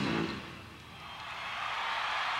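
A live rock band's last chord dies away in the first half second. A rising rushing noise without any clear pitch then swells and holds to the end.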